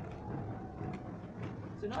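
Steady low background rumble with a few faint clicks. A woman's voice starts just at the end.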